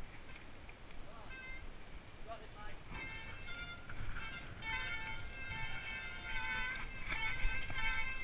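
Mountain bike descending a steep, muddy trail: low tyre and wind rumble on a helmet camera, with a high, on-and-off squeal of wet disc brakes from about three seconds in.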